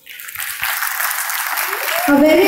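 Audience applause, starting about a quarter second in from near silence and building quickly to a steady level.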